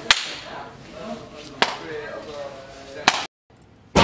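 Three sharp smacks about a second and a half apart, with faint voice sounds in between. The sound cuts out completely for a moment after the third.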